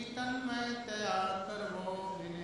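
A man's voice chanting into a microphone, holding long steady notes that shift in pitch about a second in.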